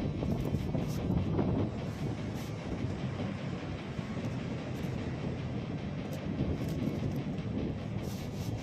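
Wind rumbling on the microphone over the steady rush of waves breaking on a sandy beach.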